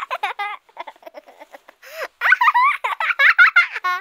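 A small child giggling and babbling in short, high-pitched bursts.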